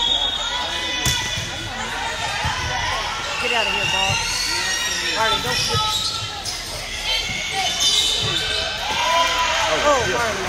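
Indoor volleyball rally on a hardwood gym court. There are a few sharp hits of the ball, and many short squeaks of sneakers on the floor. Voices of players and spectators ring out in the echoing hall.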